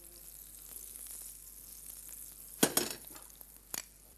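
Butter and oil sizzling faintly as they heat in a steel pan, with a few sharp knocks of utensils on the hob about two and a half seconds in and another near the end.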